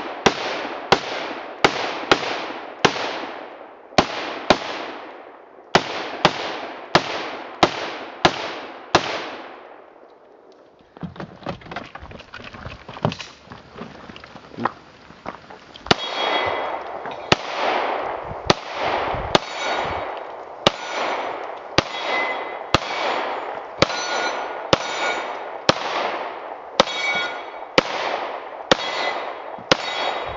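Rifle shots at a brisk pace, each echoing off through the woods, for the first nine seconds. Then several seconds without shooting, with only small clicks and handling noises. From about sixteen seconds in, a steady string of handgun shots about one every 0.7 s, many followed by the metallic ring of steel targets being hit.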